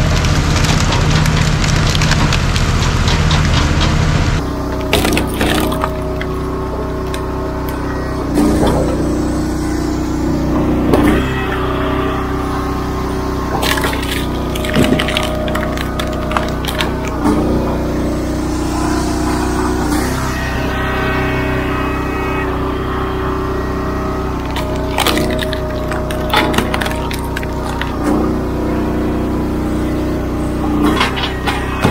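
A hydraulic excavator's engine runs for the first few seconds. Then a gas-engine Wolfe Ridge Pro 28 log splitter runs while rounds are split on its wedge, the wood cracking sharply every two to three seconds, with music playing along.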